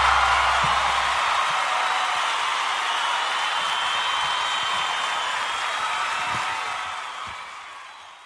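Crowd applause and cheering fading out slowly, under the last low note of a music track that dies away about a second in.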